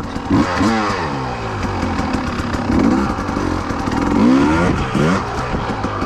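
2020 Husqvarna TE300i two-stroke enduro motorcycle engine revving up and falling back several times under throttle. The loudest rev comes about four seconds in.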